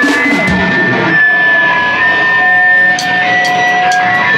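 A live hardcore punk band's electric guitars hold long steady feedback tones through loud amplifiers, with a few drum hits at the start. Near the end a cymbal is struck about twice a second, evenly spaced.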